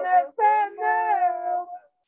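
High voices singing together, two lines sounding at once, breaking off shortly before the end.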